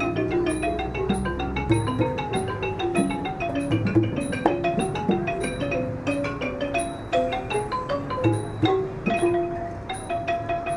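Traditional Thai music led by a ranad (Thai xylophone) playing quick runs of struck notes, with a bright high tick repeating about twice a second and occasional low thuds beneath.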